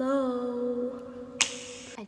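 A woman's voice holding a long, drawn-out "hello" on one steady pitch, with a single sharp snap about one and a half seconds in.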